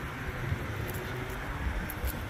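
Steady low rumble of vehicle noise, fairly quiet, with no distinct events.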